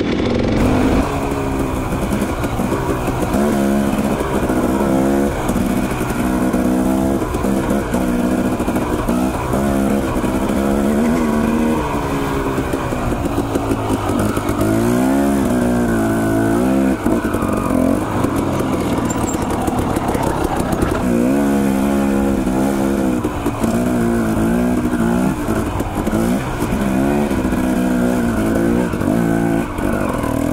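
Dirt bike engine running continuously, its pitch rising and falling again and again as the throttle is opened and closed over rough ground, with wind hiss on the helmet microphone.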